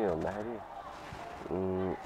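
A man's voice talking with pauses, ending on one drawn-out, steady syllable near the end.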